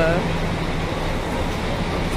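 Loud background din of a bus terminal: engines and traffic running, with a steady low hum through most of it.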